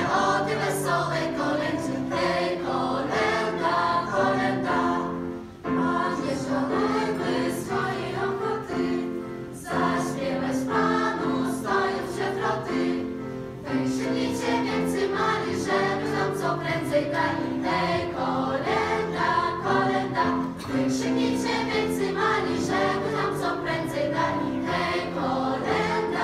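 A children's and youth choir singing a Polish Christmas carol (kolęda), with brief breaks between phrases.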